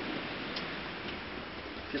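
Steady, even hiss with a faint click about half a second in.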